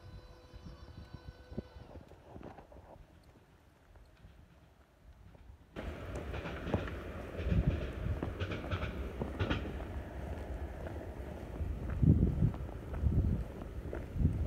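A departing train's steady whine fading out in the first second or two, then quiet. Nearly halfway through, the sound jumps abruptly to louder outdoor street noise with scattered clicks and gusts of wind buffeting the microphone.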